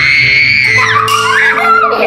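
A young girl's long, high-pitched scream, rising at the start and held for most of two seconds before dropping away, over background music.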